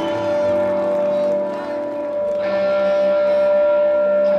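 Synthesizer holding sustained chords, one note held steadily throughout while the chord beneath it changes about two and a half seconds in.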